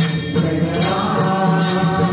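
A group chanting a Varkari devotional bhajan in unison, with small brass hand cymbals (taal) struck in a steady rhythm about twice a second and hands clapping along.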